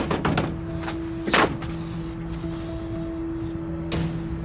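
Dramatic background score of steady held low notes, with a cluster of sharp knocks near the start and a short noisy swish about a second and a half in.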